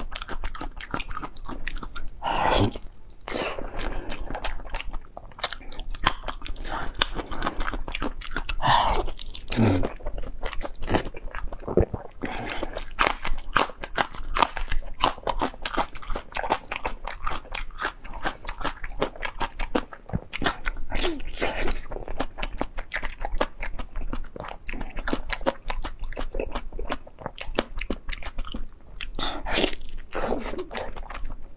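Close-miked chewing and biting of braised pork skin and meat: rapid, wet, sticky mouth clicks throughout, with a few louder bites.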